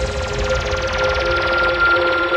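Electronic dance music in a breakdown with no kick drum: held synth notes under a rushing noise sweep that steadily loses its brightness.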